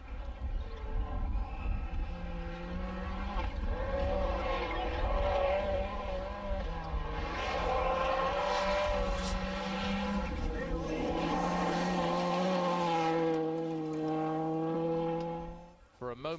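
Ford Focus RS WRC rally car running flat out on a gravel stage. Its engine is held at high revs, with the pitch stepping down and back up several times through gear changes and lifts, over the rumble of tyres on loose gravel. The sound fades away near the end.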